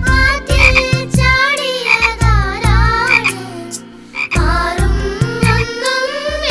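Cartoon frog croaking, a few groups of warbling croaks over the song's instrumental backing with a steady low beat.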